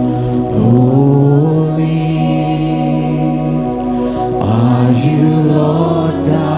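Church worship band music: voices singing long, drawn-out held notes, a new note beginning about half a second in and another near the end. Keyboard and guitar accompany them.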